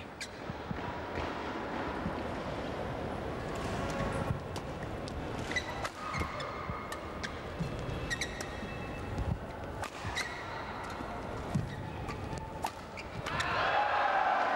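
Badminton doubles rally: sharp racket hits on the shuttlecock over a steady crowd din in an arena. About thirteen seconds in, the crowd noise rises sharply as the point ends.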